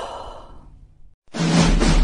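A breathy sigh trailing off after an 'oh', then a brief silence, then loud music with heavy drum beats starting a little past halfway.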